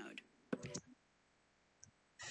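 A computer mouse click about half a second in, pausing video playback, then near silence with one faint tick near the end.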